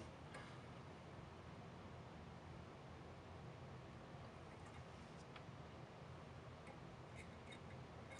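Near silence: faint steady room hiss with a few very faint ticks.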